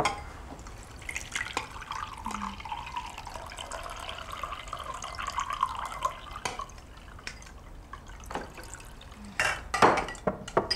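Water poured from a glass carafe into a glass tumbler, a steady stream for about five seconds. A few sharp glass clinks come near the end.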